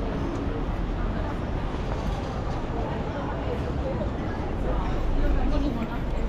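City street ambience: scattered voices of people talking, over a low rumble of traffic that swells a little near the end.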